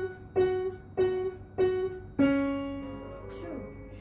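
Piano played slowly by a student: one note struck four times at an even pace, about every 0.6 s, then a lower note held and left to ring from about halfway through.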